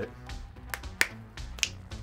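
A single sharp finger snap about a second in, with a couple of fainter clicks before and after it.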